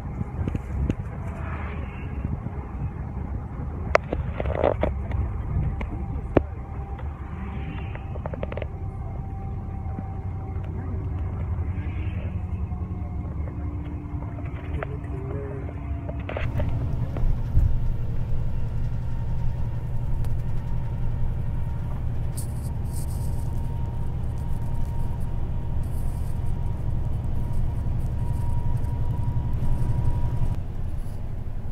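Steady low rumble of a coach bus on the move, heard from inside the cabin, with a few sharp clicks in the first several seconds. The rumble gets louder a little past halfway.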